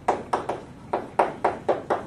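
Chalk writing on a blackboard: a quick, uneven run of about eight sharp taps and short strokes as a word is chalked onto the board.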